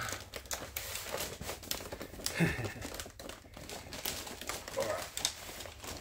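Clear plastic wrapping bags crinkling and rustling in irregular bursts as hands grip and pull a heavy figure out of its packaging.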